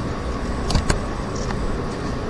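Two quick mouse clicks, a double-click, just under a second in, over a steady low rumble of microphone background noise.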